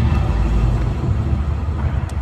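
A loud, steady low rumble right after the dance music stops, with no tune or beat left in it.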